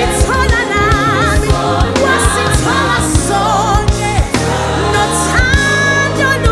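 Live gospel music: a choir singing with wavering, vibrato-laden voices over a band with bass, drums and keyboards, the drums keeping a steady beat.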